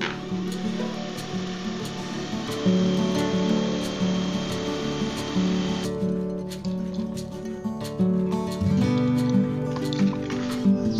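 Acoustic guitar background music, with a cordless drill running on a motorcycle helmet for the first six seconds: an even hiss with a steady high whine that cuts off suddenly.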